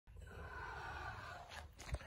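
Faint background hiss, then a couple of short handling knocks in the last half second as the recording phone is moved.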